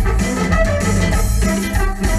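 A cumbia band playing live and loud: electric bass and keyboards over a steady percussion beat, with a heavy low end.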